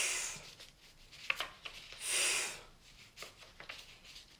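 A man's voice hissing the phonics sound 'ff' for about half a second, then another hissed sound about two seconds in, with soft clicks of flashcards being moved in between.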